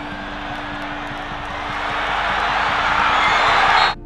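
Football stadium crowd roar swelling steadily louder over a steady music drone, then cutting off abruptly near the end.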